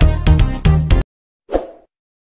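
Background music with a steady beat cuts off suddenly about a second in. Half a second later comes a single short pop, the sound effect of an animated subscribe button popping onto the screen.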